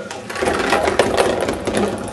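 Ping pong balls poured from a tube clattering down the chutes of a card ball sorter: a rapid run of light clicks and knocks that starts just after the pour and thins out near the end.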